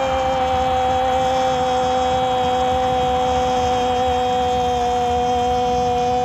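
A male sports commentator's long, sustained goal cry, a single held note kept steady for the whole stretch, announcing a goal.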